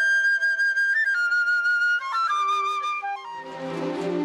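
Solo flute playing a slow melody of long held notes that step downward, with sustained lower orchestral notes coming in beneath it near the end.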